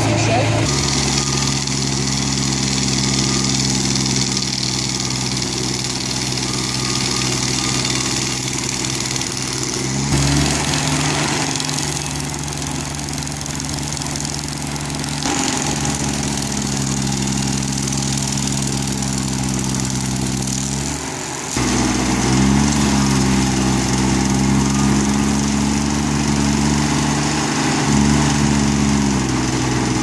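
Red Roo tracked stump grinder's 33 hp engine running under load as its cutter wheel grinds into a liquid amber stump. The engine note shifts in pitch several times, steps louder about two-thirds of the way through, and wavers after that.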